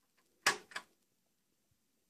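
Motorcycle gearbox shifted up from fifth into sixth with the foot shifter: two quick mechanical clunks, the second softer.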